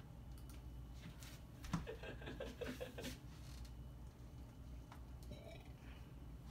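Quiet room with a steady low hum, a few faint clicks of handling, and a brief low murmur of a man's voice about two seconds in.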